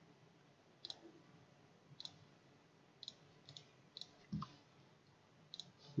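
Computer mouse button clicking: about seven short, sharp, faint clicks spaced irregularly, roughly one a second, as line points are placed in a CAD sketch. A short low thump comes a little past the middle.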